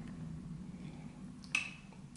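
A single short, sharp click about one and a half seconds in, over a steady low hum.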